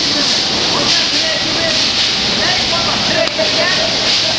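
Steady loud hiss of machinery running in a factory hall, with people's voices in the background.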